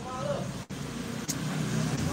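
Low, steady engine-like rumble of road traffic in the background, with a single short click a little over a second in.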